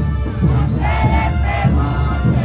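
A brass band playing a morenada, with held horn notes over a heavy bass-drum beat, under the continuous clattering whir of the dancers' wooden matraca ratchets.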